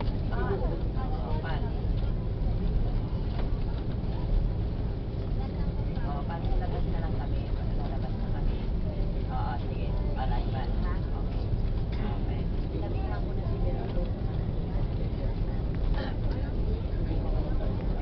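Airbus A330 cabin noise while taxiing after landing: the jet engines run at taxi power, a steady low rumble, with passengers' indistinct chatter coming and going over it.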